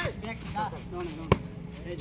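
A volleyball struck once by a player's hand: a single sharp slap a little past halfway through, among players' voices.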